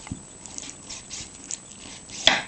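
Knife blade working around the bone of a raw chicken drumstick on a wooden cutting board: a light knock right at the start, then scattered faint clicks and scrapes as the meat is cut and scraped from the bone.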